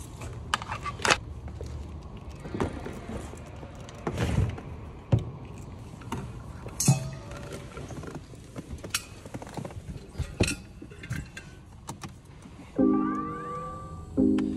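A run of scattered clicks and knocks as a car door is opened and someone climbs into the seat. Music with a plucked-string sound comes in about a second before the end.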